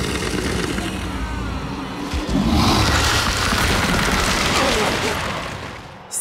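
Animated-cartoon soundtrack: dramatic music under a large creature's growling and low rumbling effects, swelling in the middle and fading toward the end.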